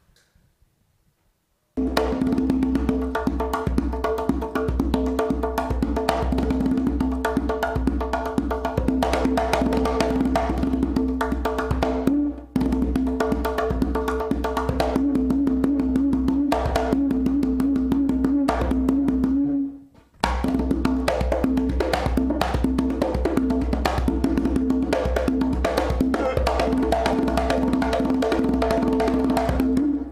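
Conga drum played by hand in a fast, dense Haitian folk rhythm, with ringing open tones among quick slaps. It starts about two seconds in and breaks off briefly twice.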